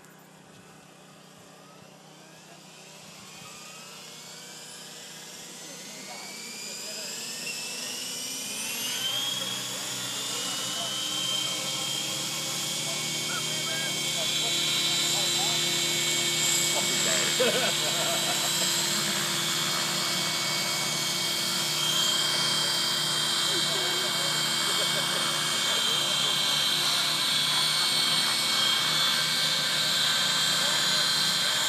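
Several radio-controlled model helicopters spool up together, their rotor whines rising over the first ten seconds or so and growing louder. They then run as a steady chorus of high, overlapping whines while hovering.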